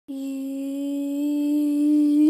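A boy's voice holding one long steady note that drifts slightly upward in pitch.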